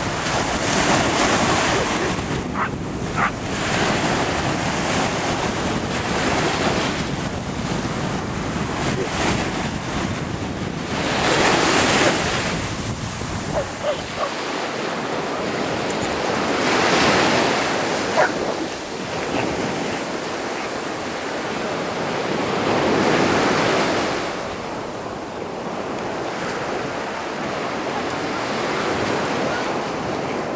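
Ocean surf breaking and washing up the beach in swells about every five or six seconds, with wind buffeting the microphone through the first half. A few brief sharp clicks stand out above the surf.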